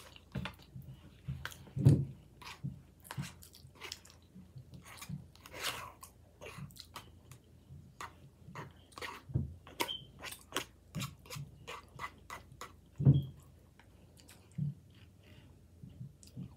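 Close-miked chewing of a soft rice-and-bean bowl, with many irregular wet mouth clicks and smacks throughout. Two louder thumps stand out, one about two seconds in and another about eleven seconds later.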